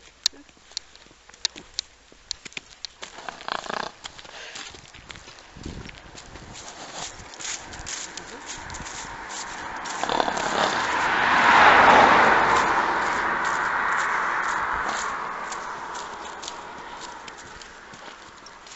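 A vehicle driving past on the road: its noise swells to a peak a little past the middle and fades away over several seconds. Light scattered clops from a pony's hooves and footsteps sound throughout.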